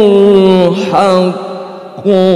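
A man's voice in melodic Quran recitation through a microphone, holding one long note that steps down slightly in pitch at the start and then fades out over the second half.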